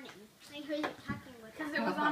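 Voices of people talking in a small room, indistinct at first and clearer near the end.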